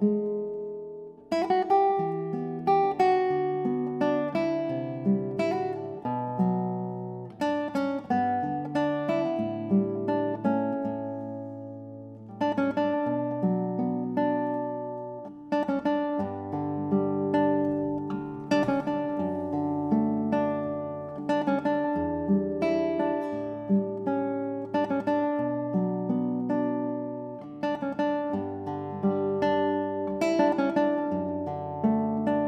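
Australian-made classical guitar played solo, fingerpicked melody and arpeggios over held bass notes, easing off briefly partway through before going on.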